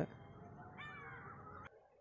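Faint background hiss with a brief, faint pitched call that bends up and down about a second in. The sound drops out almost completely near the end.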